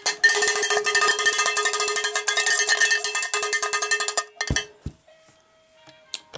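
Cowbell shaken hard, its clapper rattling against the bell many times a second for about four seconds with a steady metallic ring. Two low thumps follow.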